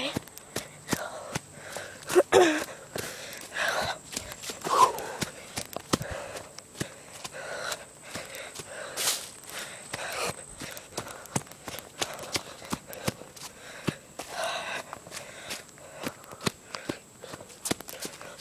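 Footsteps on a forest trail, leaves and twigs crunching underfoot in an uneven walking rhythm, with a few brief sounds of the walker's voice and breathing.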